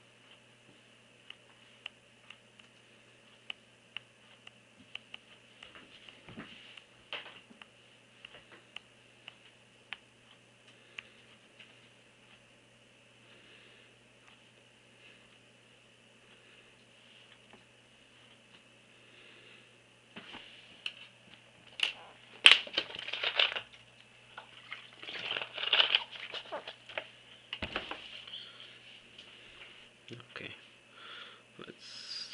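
Stylus tapping on a tablet's touchscreen: scattered light clicks through the first half, then louder rustling and handling noise for several seconds near the end, over a faint steady hum.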